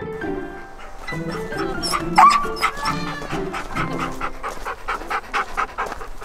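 A pack of sled huskies barking and yelping in quick succession, with a sliding yelp about two seconds in, over background music.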